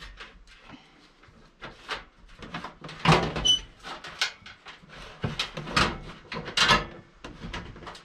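Irregular knocks, clatters and scrapes of a sheet-metal RV furnace casing being handled and pushed into its cabinet opening, loudest about three seconds in and again near seven seconds.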